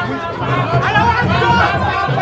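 Crowd chatter: many voices talking and calling out at once, overlapping.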